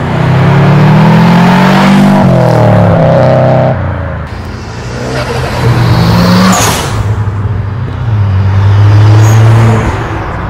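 First-generation Subaru Impreza's flat-four engine accelerating away hard. Its pitch climbs, drops at a gear change about two seconds in, and climbs again. Near the end, a Nissan GT-R R35's twin-turbo V6 runs steadily as it pulls out.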